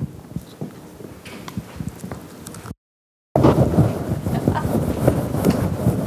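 Microphone handling noise: faint scattered knocks, then the sound cuts out completely for about half a second. When it returns, a louder stretch of dense rumbling, rustling and knocking runs on, as a handheld microphone is taken up for an audience question.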